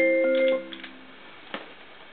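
Gulbransen DH-100 digital hymnal playing a hymn in a keyboard voice: a held chord that cuts off about half a second in as playback is paused. A single faint click follows about a second and a half in.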